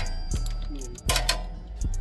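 A ratchet wrench working a bolt on a motorcycle's rear brake caliper: a few sharp metallic clicks, the loudest about a second in. Background music plays underneath.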